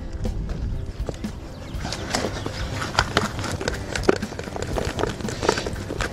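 Topsoil poured from a plastic bucket into a wooden raised bed: a rough rustle of falling soil with scattered small knocks, over background music.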